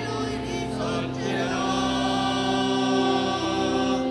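Choir singing the closing hymn of a Mass in long, held notes.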